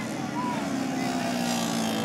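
Several 70 cc racing motorcycles' engines buzzing steadily as they lap the circuit, their pitch shifting slowly.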